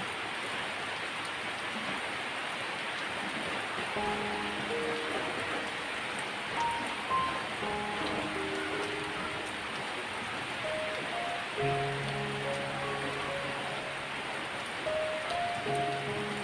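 Steady rain falling, heard as an even hiss throughout. Soft background music of slow held melody notes comes in about four seconds in and plays over the rain.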